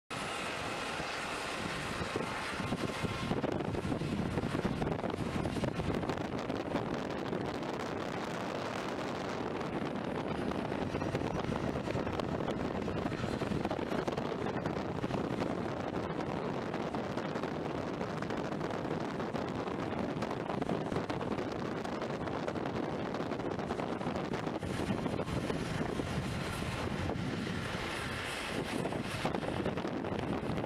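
Wind buffeting the microphone over the steady noise of a distant jet airliner taxiing, with a faint turbine whine at the start and again near the end.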